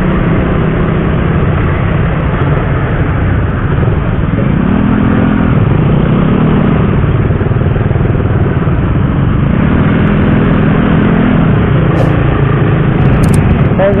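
Motorcycle ride through town traffic: a loud, steady rush of engine and road noise, with the engine note climbing in pitch about four and a half seconds in and sounding again around ten seconds.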